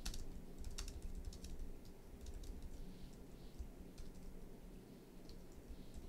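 Computer keyboard typing: faint, irregular key clicks.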